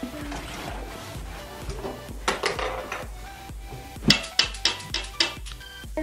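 Light clicks and clatter from school supplies being pushed into a backpack by hand, including a quick run of about six sharp clicks near the middle, over background music.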